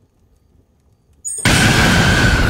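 Horror-trailer jump-scare stinger: near silence, then a brief rising swell and, about a second and a half in, a sudden loud boom-like hit that keeps sounding with a steady high ringing tone.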